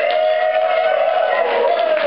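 One long held pitched note, gliding up at the start, holding steady, and slowly falling near the end.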